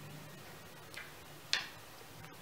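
Two clicks of round game chips being moved on a puzzle board: a faint one about halfway through and a sharper one shortly after.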